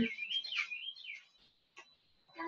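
A bird chirping: one high warbling call that rises and falls in pitch for about a second, followed near the end by a faint tick.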